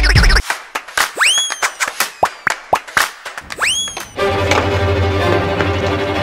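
Background music cuts off, followed by a quick run of edited sound effects: sharp pops and knocks and two swooping tones that rise and then hold. About four seconds in, new background music with a steady bass line starts.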